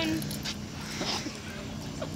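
Young people's voices: quiet, indistinct chatter and laughter from a group, trailing off from a high-pitched squealing laugh at the very start.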